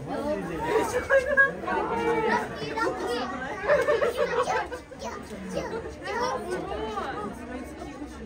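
Speech only: several onlookers chatting close by, their voices overlapping.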